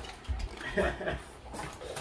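Boston terriers scuffling and climbing on a seated person, with light bumps and a few short, soft voice-like sounds.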